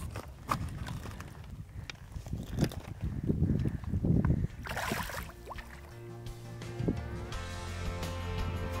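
Shallow seawater sloshing around hands and a landing net as a sea trout is released, with a short splash a little past halfway as the fish swims off. Background music fades in near the end.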